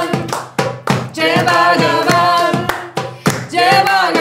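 Kirtan: a woman's voice leads a group singing a devotional chant over a steady harmonium drone, with sharp hand-drum strikes about two to three a second.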